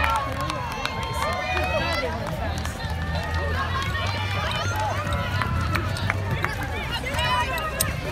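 A crowd of spectators talking and calling out while a pack of children run past on grass, with the patter of many running feet.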